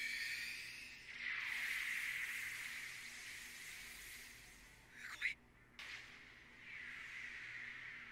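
Quiet anime soundtrack: soft, hissing swells of atmospheric sound that rise and fade, with a short sweep just after five seconds and a brief dropout to silence right after it.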